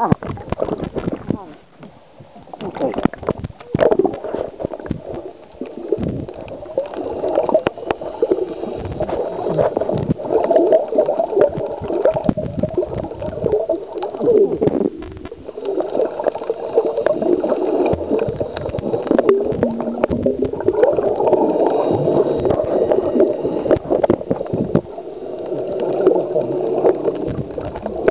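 Muffled gurgling and sloshing of water picked up by a camera held under the surface, with scattered clicks and wavering, voice-like sounds.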